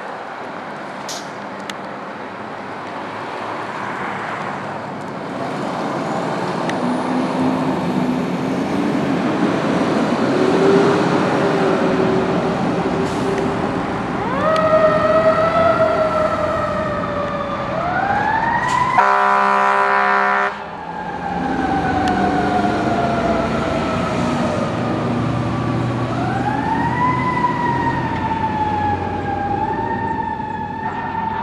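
Fire trucks responding. A diesel engine rumbles as a truck pulls out, then from about halfway a siren winds up, holds and slowly winds down in long wails, cut across by a loud air-horn blast near two-thirds of the way in, before the siren winds up again near the end.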